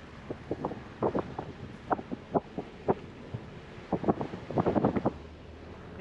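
Car cabin noise while driving slowly: a steady low road and engine rumble with wind on the microphone, under a scatter of short irregular knocks and clicks.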